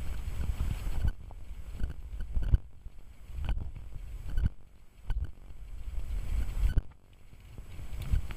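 Gusty wind rumbling on the microphone, rising and falling, over the soft, muffled hoofbeats of a horse trotting on a loose arena surface.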